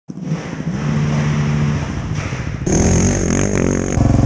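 Quad bike (ATV) engine running at a steady speed. About two and a half seconds in, the sound changes abruptly to a quad engine running close by, its pitch wavering.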